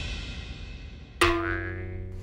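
Intro theme music fading out. A little over a second in, a sudden transition sound effect: a single bright pitched note that starts sharply and slowly fades over a low steady tone.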